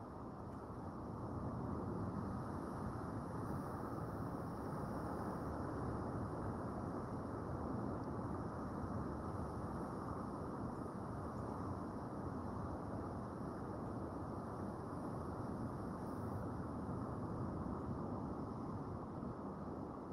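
Steady, muffled rush of underwater ambient noise, an even low hiss and rumble with no distinct events, swelling slightly over the first two seconds.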